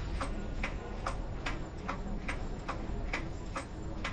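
Steady clock-like ticking, about two and a half even ticks a second, over a low background hum.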